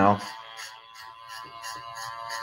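Cordless hair clipper fitted with a number two guard, running with a steady pitched hum as it cuts hair.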